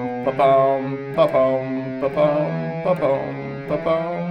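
Electric guitar played by the fretting hand alone, hammer-ons and pull-offs in a dotted long-short rhythm: each note is held long, then a quick short note follows, stepping through a finger-combination legato exercise.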